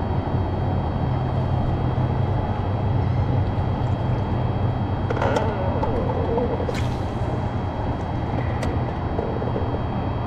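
Steady low hum and wind-like noise on a small fishing boat on open water, with a few sharp clicks and knocks in the second half.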